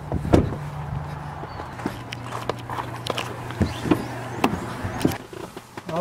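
A vehicle engine idling steadily, with a loud thump just after the start and scattered footsteps, knocks and clicks. The engine hum stops about five seconds in.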